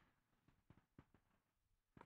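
Near silence, with a few faint clicks about halfway through.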